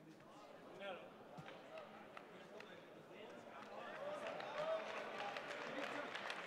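Table tennis ball being struck back and forth in a rally, sharp knocks about every 0.4 s, over the voices of the crowd in the hall. After the point ends, the crowd grows louder with shouts and clapping.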